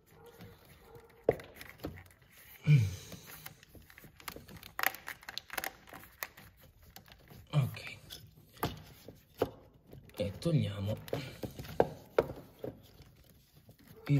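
Hands working rubber hoses, clips and plastic connectors around a car's throttle body: scattered small clicks, knocks and rustles, with a few short muttered or grunted sounds from the mechanic.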